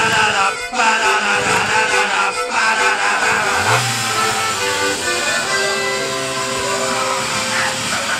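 Brass-and-accordion polka band music. About halfway through, a low motor-like drone rises in pitch and then holds steady under long held notes.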